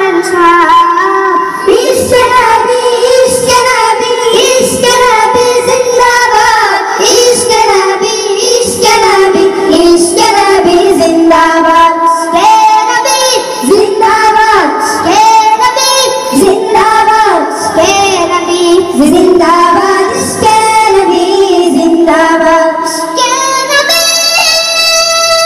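A group of boys singing together into stage microphones, amplified over a sound system.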